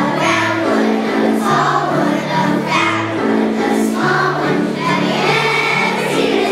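A large choir of young first- and second-grade children singing together over instrumental accompaniment, at a steady level.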